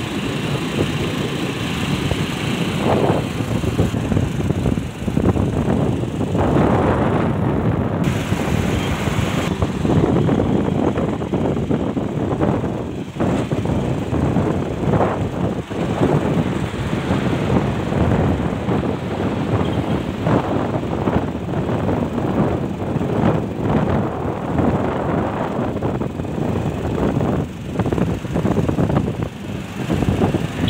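Road and wind noise heard from a moving vehicle at highway speed: a steady rushing with gusty surges from wind on the microphone, over tyre and engine rumble.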